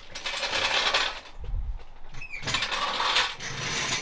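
Metal clinking and rattling from a floor jack and its long steel handle being worked beside the car, in two clattering stretches of about a second each with a dull low thud between them.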